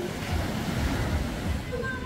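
Small waves breaking on a sandy beach in a steady wash, with wind buffeting the microphone in low thumps.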